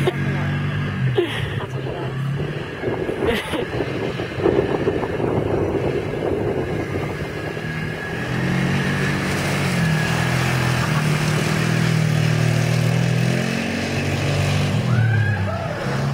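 Quad bike (ATV) engine running and being revved, its pitch rising and falling as it is ridden around, holding steadier for several seconds in the middle and dropping near the end.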